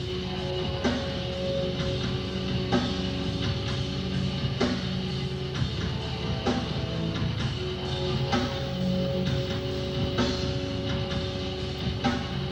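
Rock band playing live: drums hitting a slow, steady beat under long held guitar notes.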